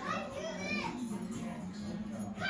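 Children's high-pitched voices calling out without clear words, mostly in the first second, over music playing in the background.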